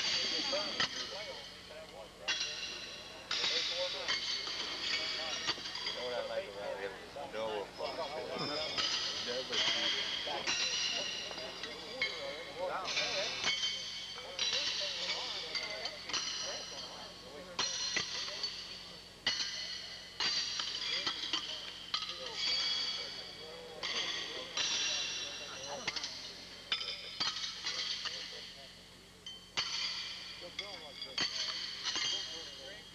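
Steel horseshoes clanging against stakes and other shoes across many courts: a quick run of sharp metallic rings, about one a second, each fading away, over a murmur of background voices.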